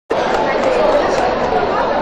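Speech through a microphone with chatter behind it.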